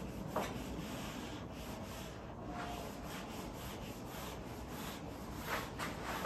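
Whiteboard eraser rubbing across a whiteboard, wiping off marker writing in repeated strokes.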